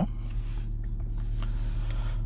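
Toyota Harrier's 2.0-litre Valvematic four-cylinder engine idling, a steady low hum heard from inside the cabin.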